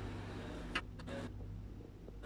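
A single sharp knock as something is set down into a slotted metal basket on a digital scale, with handling noise around it, over a steady low hum.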